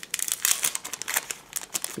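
Paper wrapper of a trading-card mystery pack crinkling as hands unfold it and pull the card out, a quick, uneven run of crackles.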